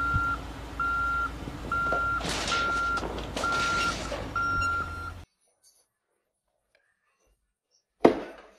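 A Case 580 backhoe loader's reversing alarm beeps steadily, roughly once a second, over the low running of its diesel engine. Around two to three and a half seconds in, bursts of loud noise come as the machine rolls off the trailer and its bucket lands on a pickup truck. The sound cuts off suddenly about five seconds in.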